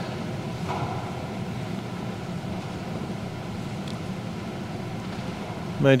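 Steady low hum of background room noise, with no distinct events; a man's voice begins at the very end.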